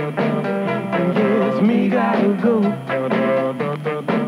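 An oldies record playing on an AM radio station broadcast: continuous music with a wavering melody line over a steady beat.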